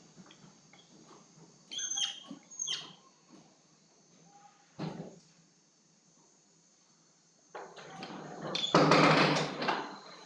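Marker tip squeaking on a whiteboard in two short strokes about two seconds in, with quieter scratching of the marker between. Near the end a louder rushing noise swells up for about a second.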